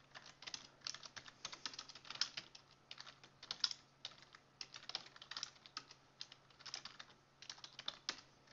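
Faint computer keyboard typing: quick runs of keystrokes broken by a couple of short pauses.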